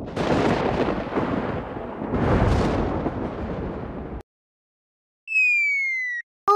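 Thunder sound effect: two long rolling claps, the second starting about two seconds in, cutting off abruptly after about four seconds. Near the end, a short electronic tone glides slightly downward.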